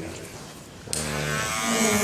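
Electric hair trimmer buzzing steadily as it cuts beard stubble. About a second in it gets louder, with a sharper, hissing edge.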